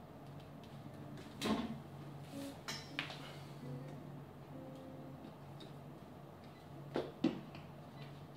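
Handling noise at the camera: scattered knocks and clicks, the loudest a thump about a second and a half in, over a low steady hum.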